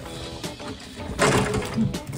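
Quiet background music with held notes. Under it, soft swishing and sloshing from a dishcloth scrubbing a glass in sudsy dishwater, most noticeable in the second half.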